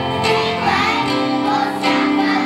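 A group of children singing a pop song together in unison, accompanied by strummed ukuleles, keyboard and electric guitar.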